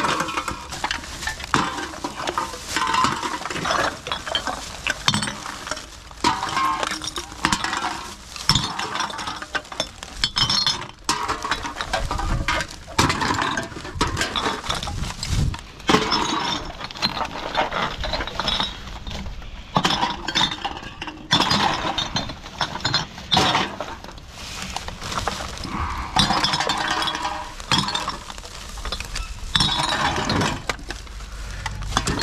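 Aluminium drink cans and glass bottles clinking and knocking together, with a plastic bin bag rustling, as gloved hands rummage through a bag of rubbish.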